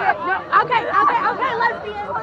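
People talking close by in a street crowd: overlapping, indistinct chatter.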